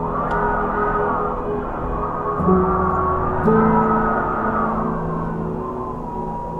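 Wind gusting in two slow swells that rise and ease, over ambient music holding long low notes.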